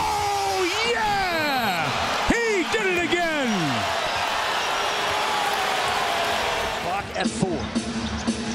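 Broadcast commentators letting out long, falling wordless 'ohhh' exclamations over arena crowd noise, reacting to a three-pointer made at the end of the quarter. About seven seconds in the sound cuts abruptly to a different game's broadcast.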